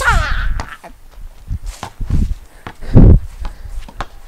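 A short cry that falls in pitch just as the shot goes up, then a basketball thudding on the concrete driveway a few times, loudest about three seconds in.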